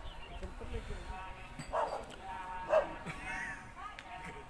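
A dog barks twice, about a second apart, the second bark the louder.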